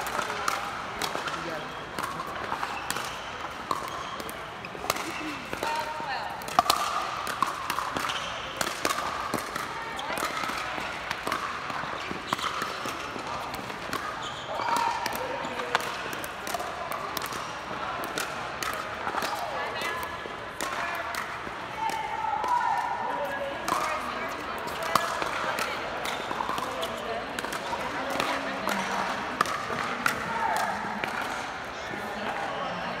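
Pickleball play: sharp pops of paddles striking the perforated plastic ball, at irregular intervals throughout, from this court and neighbouring ones, over indistinct voices.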